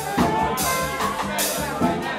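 Live jazz band playing: a man singing into a microphone over a walking run of low bass notes and a drum kit with cymbal washes.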